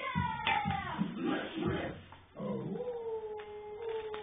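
A short falling shout at the start, then, a little past halfway, a long held dog-like howl, "awwwoooo", from a costumed dog character on a TV show. It comes through a television speaker, recorded on a phone.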